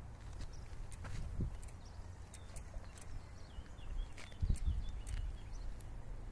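Outdoor ambience: a steady low rumble like wind on the microphone, with a few short high chirps near the end, like small birds calling, and scattered light clicks.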